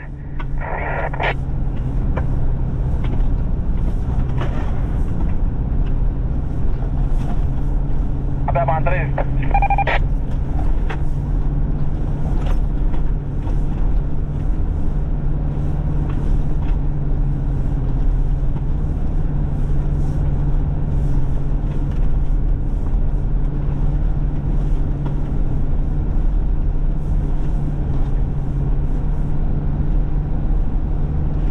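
Steady low engine drone and rolling noise heard from inside the cab of an off-road SUV being pulled through deep snow on a tow strap.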